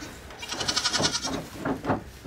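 Nigerian dwarf goat bleating, a high, quavering call about half a second in, followed by a few softer short sounds.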